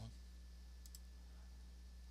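Near silence: a low steady hum from the recording chain, with two faint high ticks about a second in.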